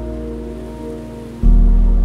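Slow, calm piano music: held notes fade away until a new deep chord is struck about one and a half seconds in and rings on, decaying slowly. A faint steady water-like hiss lies underneath.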